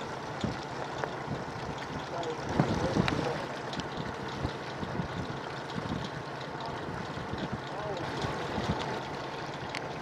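Wind buffeting the microphone over choppy water washing against a boat's hull, with faint distant voices about two and a half seconds in.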